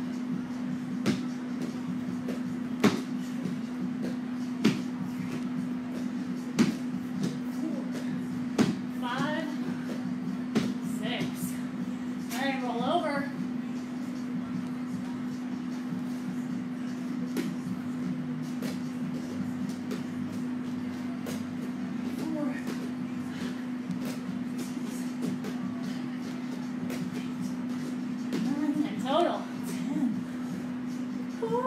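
Hands and feet thudding on rubber gym floor mats during a bodyweight floor exercise, sharp knocks about every two seconds at first and then softer, over a steady low hum.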